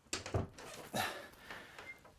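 Muffled knocks, rustling and a couple of short vocal sounds from a man changing clothes behind a closed closet door, with the door being opened near the end.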